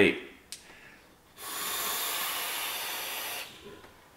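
A lung hit on a sub-ohm vape, a 0.14 ohm build fired at 110 watts: a steady airy hiss of air and vapour lasting about two seconds, preceded by a small click.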